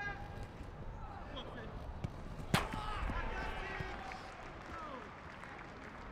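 Football match crowd and players shouting, with a single sharp ball strike about two and a half seconds in, followed by a swell of cheering as a goal goes in.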